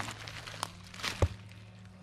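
A few scattered crackles and snaps of dry, shredded palm wood, fibre and leaf litter being disturbed, over a steady low hum.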